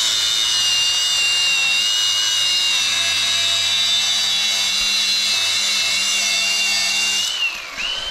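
Cordless angle grinder cutting into the end of a steel roll-cage tube, with a steady high whine over a hiss of abrasive on metal. Near the end the whine winds down briefly, then picks up again.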